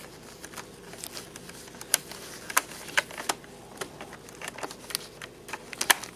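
Small scattered clicks and rustles as gloved fingers push a charging plug and its wires back into the plastic hull of an RC model tank, with one sharper click near the end.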